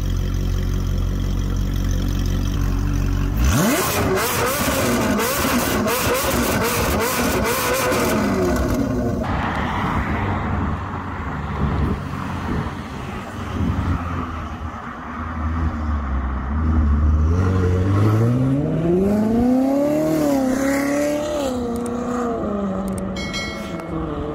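Straight-piped Ferrari 458 Italia's V8 idling with a steady low note. About three and a half seconds in it revs, with rapid crackling and popping from the open exhaust. Later it accelerates hard, its pitch climbing through a gear change before the sound falls away.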